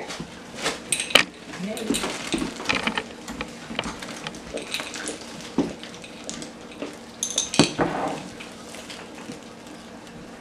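Trail mix of peanuts, M&M's and banana chips being poured from a glass jar into plastic zipper bags: nuts and candy rattling and clattering in irregular spurts, with crinkling of the plastic bags.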